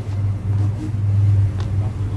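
A steady low rumble, with a faint background hiss over it.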